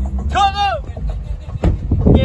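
A single short, drawn-out call from a person's voice about half a second in, over a constant low rumble, with a sharp click near the end.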